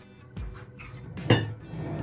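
A single sharp clink about a second and a quarter in, with a few lighter ticks before it, as a metal mason-jar lid is handled beside the water-filled glass jar, over quiet background music.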